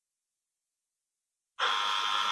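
Dead silence, then about one and a half seconds in, the sound track of a recording played back cuts in abruptly as a steady hiss with a faint hum.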